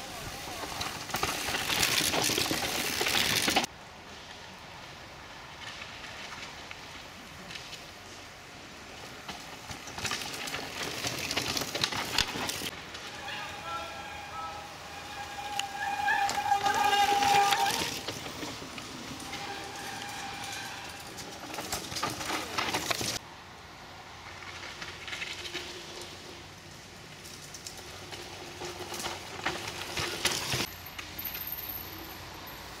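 Mountain bikes coming down a dirt trail and past close by, one after another, with tyres on the dirt and the bikes rattling; each pass swells and fades over a few seconds. Voices call out during the passes, loudest around the middle.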